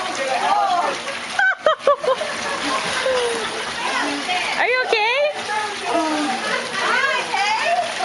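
Water splashing and churning as a man thrashes through a swimming pool after plunging in, with excited voices over it, one rising high and wavering about five seconds in.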